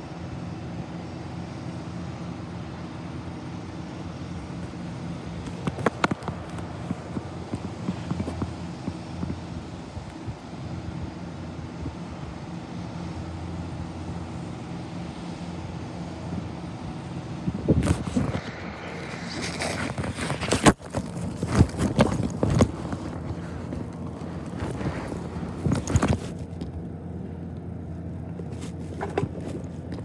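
Diesel engine of a front-loading garbage truck running steadily at a distance, with a few faint knocks. In the second half, loud irregular rustling and knocking as the recording phone rubs against clothing.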